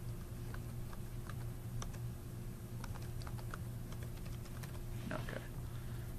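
Computer keyboard keystrokes: a scatter of separate clicks as a serial number is typed in, over a steady low hum.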